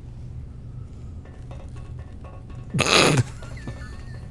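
Film soundtrack with the score removed: a low steady hum, then about three seconds in a short loud burst of noise, followed by a thin warbling electronic whistle from R2-D2.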